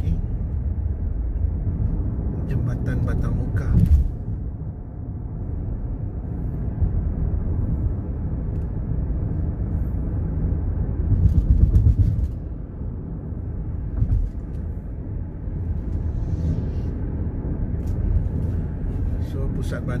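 Car interior road noise: a steady low rumble of engine and tyres heard from inside the cabin while driving on a paved road, swelling louder for a moment about 11 seconds in.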